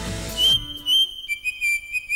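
Background music: a high whistled melody begins about half a second in, with two short notes and then a slightly lower held note, as the fuller music before it fades out.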